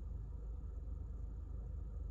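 Faint, steady low hum of a car's cabin, with no other sound standing out.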